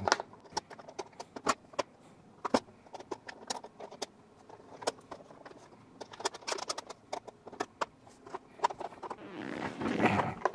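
Small hard-plastic clicks and taps, irregular and sharp, as plastic cutlery is set into the utensil compartment in a plastic bento box lid and pressed into place. Near the end comes a short scraping slide as the box is moved across the tabletop.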